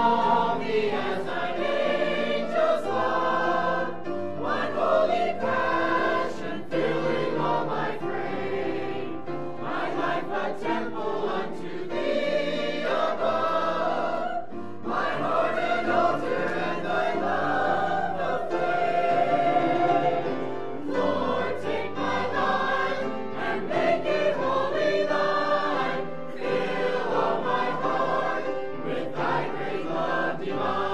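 Church choir of mixed men's and women's voices singing a gospel cantata number, with long held low notes running underneath.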